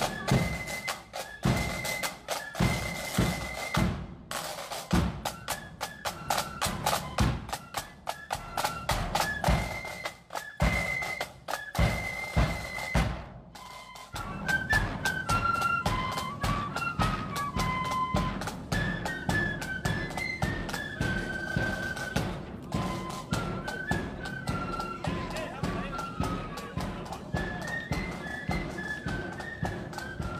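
Marching flute band playing: a high flute melody over steady drum beats. About 13 seconds in the music drops briefly, then the tune and drumming carry on.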